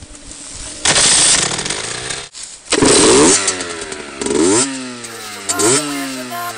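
Small two-stroke engine of an HM CRE Six Competition enduro bike running and being revved in sharp blips: the revs jump about a second in, again near three seconds, four and a half and five and a half, and fall away between each.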